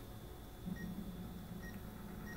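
Faint television audio as a Netflix programme starts playing: a low hum begins just under a second in, with short high beeps repeating every half second or so.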